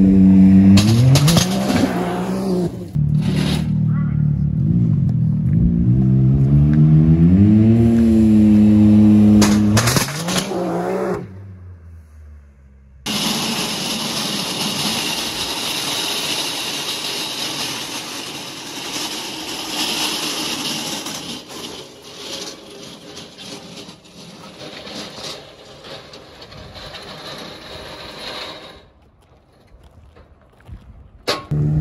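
Can-Am Maverick X3 side-by-side's engine revving hard, its pitch climbing, dipping and climbing again for about ten seconds before it drops away. After a short gap a steady hiss takes over and slowly fades.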